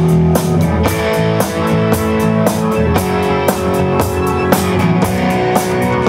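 Live rock band playing an instrumental intro: electric guitar chords over a drum kit keeping a steady beat.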